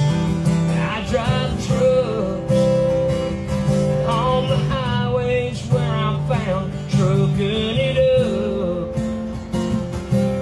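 Acoustic guitars playing a country song live, with strummed chords underneath and a melody line above that bends in pitch in short phrases.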